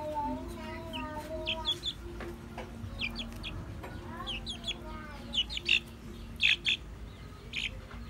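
Young chicken cheeping while held: a string of short, high chirps, a few louder ones just past the middle, over a low steady hum.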